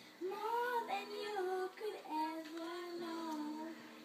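A young girl singing a Christmas song, in two held, sliding phrases with a short breath gap about two seconds in.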